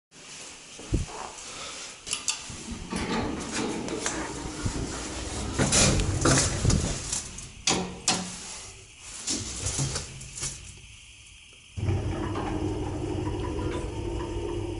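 Small electric passenger elevator (320 kg, 1 m/s): scattered clicks and rustles as a person steps into the car and presses a floor button, then near the end a steady low electric hum starts suddenly as the elevator's machinery switches on.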